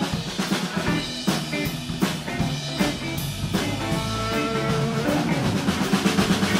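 Live blues band playing an instrumental passage with no singing: a drum kit with snare and bass drum drives it under electric guitars. About four seconds in, a lead line of held notes comes in over the band.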